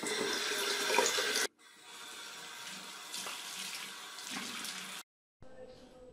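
Bathroom tap running into a sink, cutting off abruptly about a second and a half in. A quieter, steady rushing follows until a brief dropout near the end.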